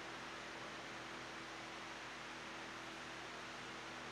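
Steady hiss with a faint low hum underneath: background noise of the hall and recording, with no other event.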